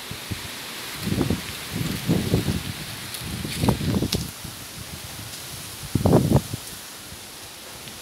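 Mango tree leaves and branches rustling in four short bursts as someone climbs among them, over a steady outdoor hiss.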